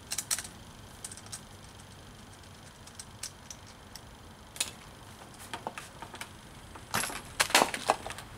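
Scattered small clicks and knocks of a metal wrench on the propeller nut and of a plastic propeller being worked off an electric trolling motor's shaft, with a louder run of clatter near the end.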